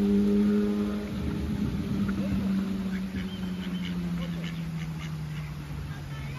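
An engine hums steadily, loudest at first, its pitch slowly sinking as it fades a little. A few short quacks from ducks come in the second half.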